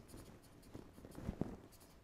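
Black felt-tip marker writing on a paper notepad: faint, short scratching strokes as a word is written.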